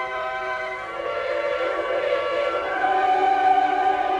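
Choir and orchestra in a sacred oratorio, holding long sustained chords that build in loudness from about a second in.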